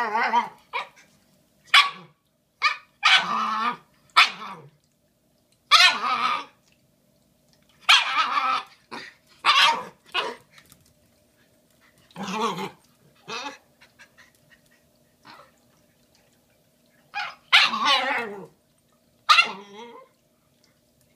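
Shiba Inu puppy barking and yipping in a run of about a dozen separate outbursts, some short and some drawn out, with pauses between them.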